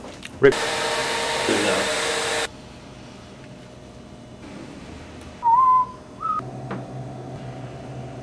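A loud, steady rushing hiss lasts about two seconds, starting and stopping abruptly. A few seconds later come two short whistled notes, the second shorter and a little higher.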